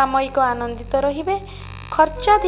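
A voice reading horoscope predictions in Odia over a steady low background drone, pausing briefly near the end.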